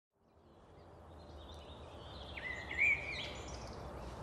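Birds chirping and calling over a steady background hiss that fades in from silence over the first couple of seconds. The loudest call comes a little under three seconds in.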